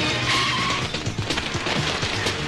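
Car tyres squealing in a short skid in the first half, over background film music.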